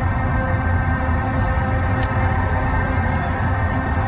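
A football match broadcast in a pause of its commentary: a steady, many-toned drone of stadium or background sound, band-limited like radio audio, over the low rumble of a car driving.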